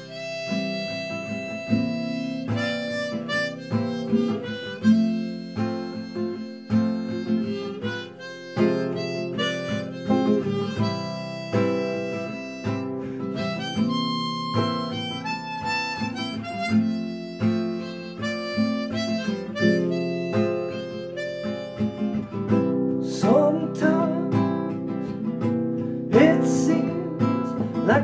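Harmonica in a neck rack played together with a strummed nylon-string classical guitar: an instrumental song intro with long held harmonica notes over repeated chord strums, with some bent harmonica notes near the end.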